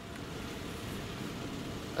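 Steady, even outdoor background hiss with no distinct event; no shotgun blast in this stretch.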